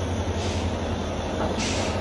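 Steady low drone of heavy machinery running, with a soft hiss about half a second in and again near the end.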